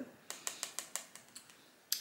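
A quick run of light clicks of cutlery against a dish, about ten in a second and a half, slowing and fading away.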